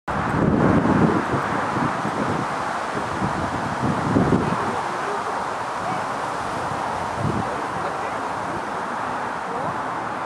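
Steady wind noise on the microphone, with indistinct voices in the background rising a few times.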